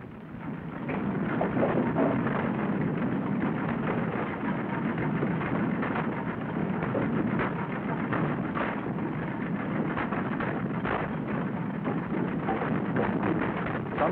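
Pulp mill machinery handling pulpwood: logs tumbling and knocking together in a rotating drum barker and on the conveyors, a steady rumble with many short wooden knocks.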